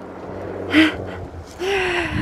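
A woman's breathy gasp, a short intake of breath about a second in, then a breathy laugh beginning near the end.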